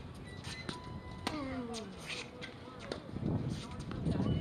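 Tennis balls struck by racquets on an outdoor hard court, a few sharp pops, the clearest about a second in, under distant talking voices.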